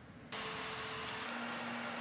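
Skateboard wheels rolling on pavement: a steady rushing noise that starts suddenly a moment in and carries on evenly, with a slight change in its hum partway through.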